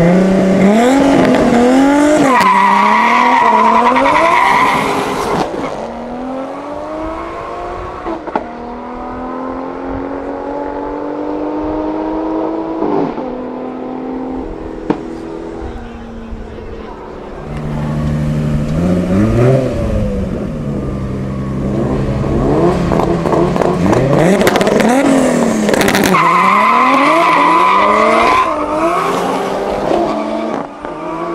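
Cars launching hard in a drag race: a Nissan 200SX with a swapped, big-single-turbo RB25DET straight-six, and a Mercedes C63 AMG estate, accelerate flat out, rising in pitch through several upshifts before fading away down the strip. A second hard launch follows, loud and rising again, with tyre squeal near the end as the 200SX spins its rear tyres.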